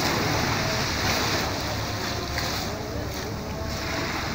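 Sea waves washing and breaking over shoreline rocks, a steady rush of surf that swells and eases every second or so, with wind buffeting the microphone underneath.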